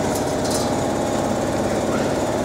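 Tube-and-plate fiber laser cutting machine running with a steady mechanical hum, with two short high hisses in the first half second.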